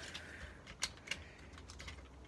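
Faint small plastic clicks and taps from the parts of a Transformers Masterpiece MP-30 Ratchet figure being handled and moved into place, with two sharper clicks about a second in.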